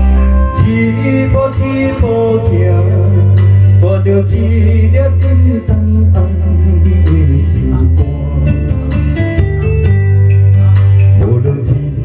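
A man singing through a microphone over instrumental accompaniment with a steady bass line and guitar.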